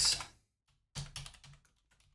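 Computer keyboard typing: a quick run of keystrokes about a second in, then a few fainter ones near the end.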